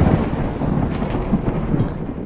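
Intro sound effect: a deep, thunder-like rumble, the tail of a sudden boom, slowly fading.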